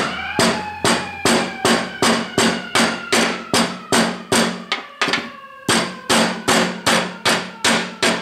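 A steel hammer repeatedly striking the cracked plastic handle of another hammer on a metal-topped bench, shattering the brittle plastic into chips. The blows come in a steady rhythm of about two and a half a second, with a brief pause about five seconds in, and each blow has a slight metallic ring.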